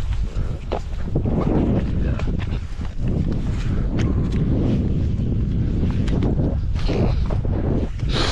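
Wind buffeting the microphone, a steady low rumble, with footsteps and scuffing through heather and a few short knocks.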